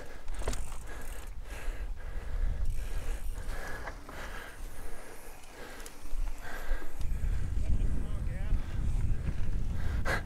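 Mountain bike rolling over slickrock: wind rumbling on the handlebar camera's microphone, with scattered clicks and rattles from the bike. The wind rumble grows louder about seven seconds in.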